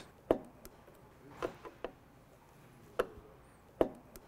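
About five short, sharp clicks and taps of a hand screwdriver working the small screws that hold a wine cooler's circuit board, with no motor sound.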